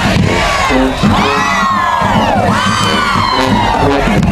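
High school marching band playing a funk tune in the stands, with drums and sousaphones keeping a steady low beat, over crowd cheering. Two long swooping high notes rise and then fall, one about a second in and another near the end.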